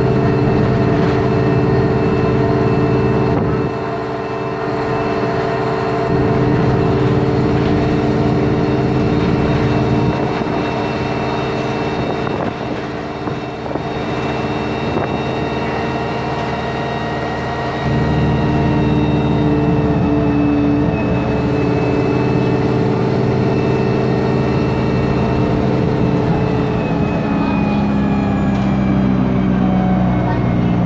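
Alexander Dennis Enviro 200 single-deck bus heard from inside the passenger cabin, its diesel engine and transmission running hard at speed with a steady whine of several held tones over a heavy rumble. The drive note drops about four seconds in and comes back louder about eighteen seconds in, and the tones fall in pitch near the end.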